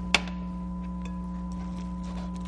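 A steady electrical hum of several even tones, with one sharp tap just after the start and a few faint clicks after it.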